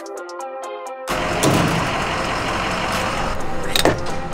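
Background music, joined about a second in by live gas-pump sound: a steady rushing noise of the fuel nozzle at a car's filler neck, with two sharp knocks from the nozzle being handled.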